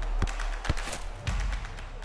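Short musical sting for an animated logo: a few sharp percussive hits and swishing noise over a deep, sustained bass.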